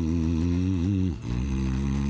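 A low, droning male voice chanting in the background music, holding two long notes with a slight waver and a short break about a second in.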